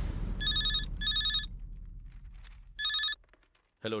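A telephone ringing with an electronic trilling ring: two short rings close together, a pause, then one more, over a low tone that fades away.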